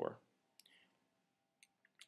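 A man's word trails off, then a quiet pause with a faint rustle about half a second in and two short faint clicks near the end.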